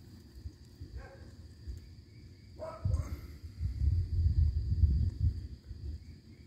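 Outdoor garden sound: a steady high insect drone throughout, two brief faint animal calls about one and two and a half seconds in, and a louder uneven low rumble on the microphone in the second half.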